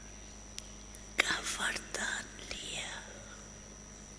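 A woman's soft, whispered speech close to the microphone, starting about a second in after two faint clicks and trailing off before the end. A steady electrical hum and a thin high whine run underneath.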